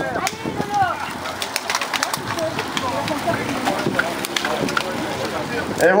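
A pack of racing bicycles setting off at close range: many sharp, scattered clicks from cleats snapping into pedals and from drivetrains, over the chatter of spectators' voices.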